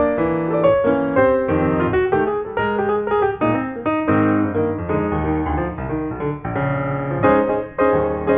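Background piano music, with a steady flow of notes.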